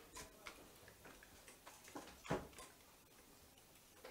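Near silence in a quiet room, with a few faint, irregularly spaced clicks and one slightly louder tap a little past halfway.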